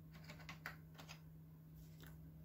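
A few faint computer keyboard keystrokes, typing a file name, over a steady low electrical hum.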